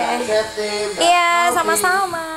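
A girl singing short, bending vocal phrases into a microphone over a stage PA.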